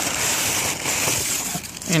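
Packing material and cardboard rustling and crinkling as a shipping box is unpacked by hand, a continuous noisy rustle that eases off near the end.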